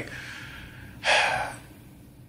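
A man's short, sharp intake of breath about a second in, after a faint breathy pause.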